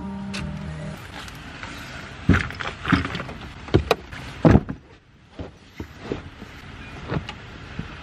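Bags being loaded into a car: rustling with a string of knocks and thumps, the loudest about four and a half seconds in. A music track ends in the first second.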